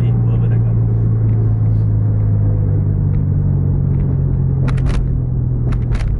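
Steady low drone of a car's engine and tyres at road speed, heard from inside the cabin, with a few sharp clicks near the end.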